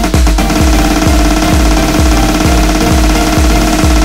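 Instrumental electronic dance music: a steady kick drum about three beats a second under dense, layered synthesizer tones, with no vocals.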